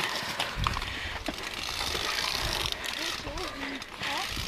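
Downhill mountain bike clattering and rattling over rocks and roots at speed: tyres hitting stones, with the chain and frame knocking. There is a rumbling undertone and a stream of sharp clicks.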